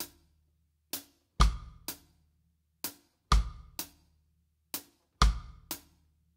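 Drum kit playing a reggae one-drop beat: hi-hat on beats two and four, bass drum and snare cross-stick struck together on beat three, with beat one left empty. The pattern repeats steadily about three times.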